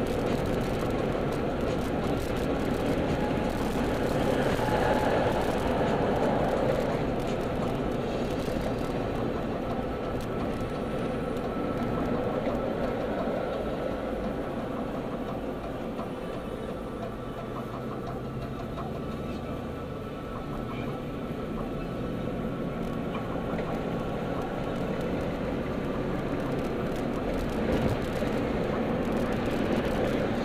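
Steady road noise inside a moving car: tyre and engine rumble while driving at road speed. It eases off a little midway and builds again near the end.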